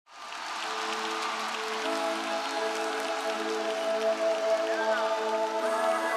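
Sustained keyboard pad chords fading in from silence, held steady with notes changing about two seconds in, over a faint haze of crowd noise.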